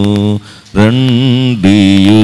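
A man singing a Telugu hymn solo into a microphone, holding long notes with a wavering vibrato, with a brief break for breath about half a second in.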